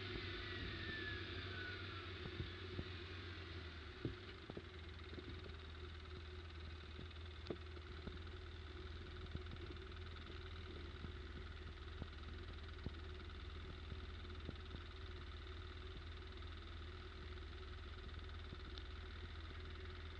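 ATV engine winding down and then idling steadily at a low level, with a falling whine in the first couple of seconds and a few scattered light clicks.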